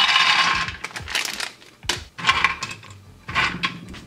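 Shelled hazelnuts poured from a foil packet into an aluminium mess tin, clattering on the metal: a dense rattle in the first second, then a few shorter bursts of clicking as more nuts drop and are handled in the tin.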